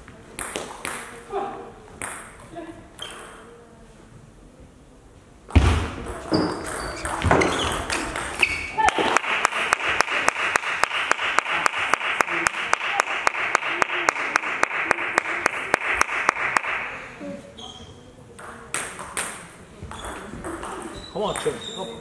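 Table tennis ball clicking off bats and table in a short rally. Then, after a sudden thump, spectators shout and clap in a fast, even rhythm for about eight seconds before it dies away.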